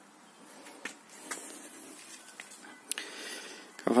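Faint handling noises: a few light clicks and knocks, the sharpest about three seconds in, with no power tool running.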